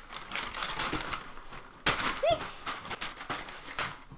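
Paper packing material rustling and crinkling as it is handled and pulled out of a cardboard shipping box, with one sharp click a little under two seconds in.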